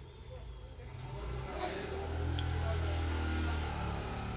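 A motor vehicle's engine hum, low and steady, growing louder from about a second in.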